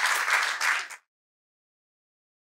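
Audience applauding, cut off suddenly about a second in.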